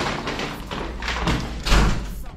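Dull thumps and rustling from a handheld phone camera being moved about while walking, the loudest thump near the end.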